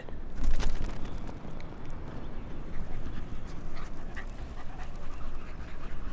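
A dog panting as it runs to fetch a thrown toy, with faint scattered ticks over a steady background hiss.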